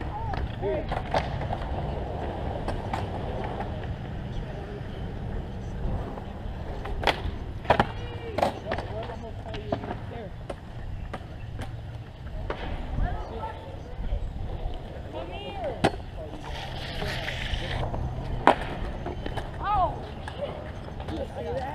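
Skateboards rolling on concrete with a low wheel rumble, broken by sharp board clacks and impacts: a cluster of three around the middle and single ones a little later and near the end.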